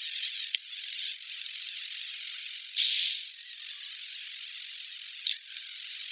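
A steady high hiss, with a louder rush about three seconds in and two brief clicks, one about half a second in and one near the end.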